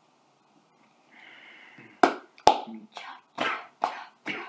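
A person coughing after chugging warm soda from a can: a short breathy hiss, then two sharp coughs about two seconds in, followed by a run of shorter coughs about two a second.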